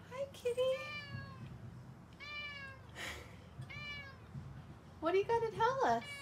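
Domestic cat meowing repeatedly: a string of high, arching meows, then a louder, lower, wavering run of calls about five seconds in.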